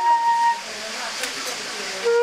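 Concert flute holding a note that breaks off about half a second in, followed by a hissing breath between phrases, with no note sounding until the next phrase begins at the end.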